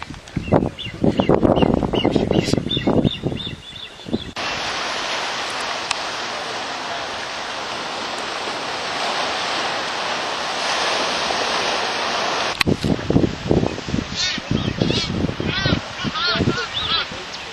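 Steady, even hiss of surf washing on a rocky shore, cutting in sharply a few seconds in and stopping abruptly near the end. Before and after it, wind rumbling on the microphone with short, repeated high bird calls, busiest in the last couple of seconds.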